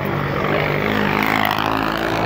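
A motor vehicle engine running close by, with a steady low drone and a rushing noise that swells about halfway through and then eases.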